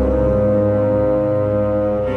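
Background music: one low, sustained chord held steadily.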